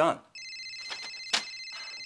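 Mobile phone ringing: a steady, high electronic ringtone that starts a moment in and keeps going, with one short click about halfway through.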